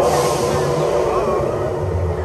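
Expedition Everest roller coaster train rolling along its track: a steady rumble.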